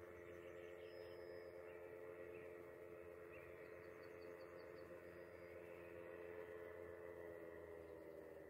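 Distant paramotor's engine and propeller heard from the ground as a faint, steady drone, its pitch holding level.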